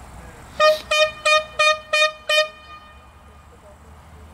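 A horn sounding six short toots in quick succession, about three a second, all on the same pitch.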